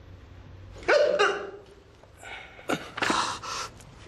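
A man's pained cry about a second in, followed by heavy, ragged gasps and panting breaths: the sounds of a man in agony.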